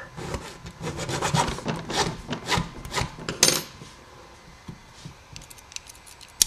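Small hand file scraping a key blank in short strokes, about three a second, deepening the cut for the first pin. The strokes stop about three and a half seconds in, followed by a few faint clicks of small parts being handled.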